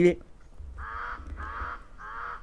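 A bird calling in the background: three short calls in quick succession, starting about half a second in, over a faint low rumble.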